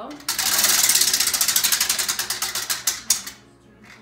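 Prize wheel spinning, its clicker ticking rapidly against the pegs on the rim. The clicks slow steadily as the wheel coasts down and stop a little past three seconds in, when the wheel comes to rest.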